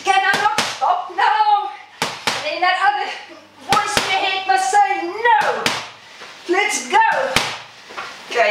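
Boxing gloves landing one-two punches on a Thai pad: pairs of sharp smacks about 0.4 s apart, three pairs roughly three and a half seconds apart, over a person's voice.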